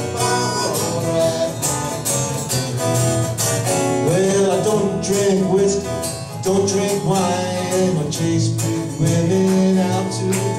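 Instrumental break with a harmonica solo, its notes bent and sliding in pitch, over strummed acoustic guitar and bass guitar.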